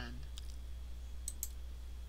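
Computer mouse clicking: a faint click about half a second in, then two quick clicks close together near the middle, over a low steady hum.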